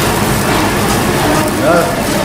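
Pork belly sizzling on a charcoal tabletop grill, as a steady hiss over a low steady hum, with voices talking in the background.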